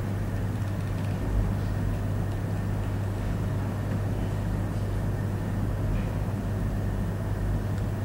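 Steady low hum with a faint even hiss beneath it: the background noise of the lecture recording, with no other sound.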